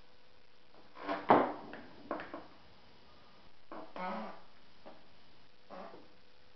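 A few irregular knocks and scrapes from hand work on a carbon-fibre part. The loudest is a sharp knock about a second in, with a longer scraping sound near the four-second mark.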